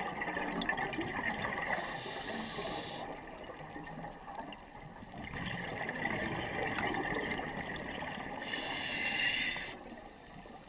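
Scuba regulator breathing heard underwater: two long exhalations of rushing, gurgling bubbles, the second cutting off sharply near the end, with a quieter inhale between them.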